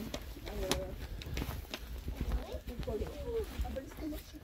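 Voices talking softly and unclearly, with scattered sharp clicks and a steady low rumble underneath.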